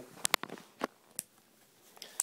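Four light, sharp clicks and taps in the first second or so as a small revolver is handled and lifted off a wooden table, then quiet.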